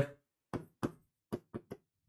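Five quiet, sharp taps of a pen on a writing surface over about a second and a half while words are written out.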